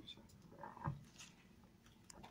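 Quiet room tone with a few faint rustles and soft knocks, the clearest just under a second in.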